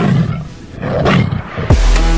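A tiger roar sample sounds in a break of a festival trap track while the beat is stopped. A quick downward sweep near the end leads into the drop, which comes in with heavy deep bass.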